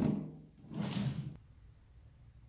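A white cabinet drawer sliding on its runners and shutting, the sliding rush stopping abruptly just under a second and a half in, after the fading tail of a knock at the start.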